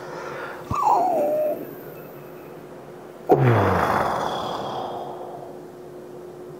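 A man whimpering and groaning in pain from knocking his funny bone (elbow) on a desk: a short whine falling in pitch about a second in, then a loud groan about three seconds in that trails off into a long breathy exhale.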